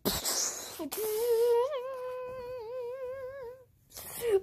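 A brief rustle of handling, then a voice humming one held note for about two and a half seconds, its pitch wavering up and down, stopping shortly before the end.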